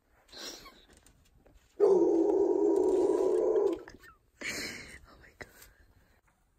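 A person's loud, drawn-out vocal groan lasting about two seconds, starting about two seconds in, with a short breathy sound before it and another after it.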